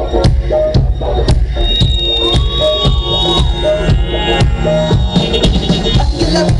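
A live band playing electronic dance-pop at concert volume, with a steady drum beat of about two hits a second over heavy bass and sustained synth lines.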